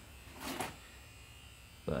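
Faint steady electrical hum, with a short breathy rush about half a second in.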